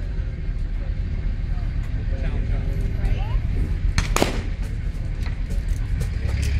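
A single shotgun shot at a clay target about four seconds in, sharp and followed by a short echo, over a steady low rumble.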